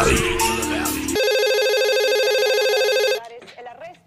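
Music cuts off about a second in and a corded desk telephone rings once, a steady ring with a fast warble lasting about two seconds, then stops abruptly.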